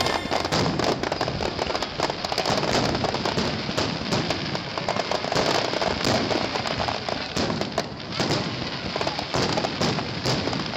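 Aerial fireworks shells bursting in rapid succession: a dense, continuous run of bangs and crackles with no gaps.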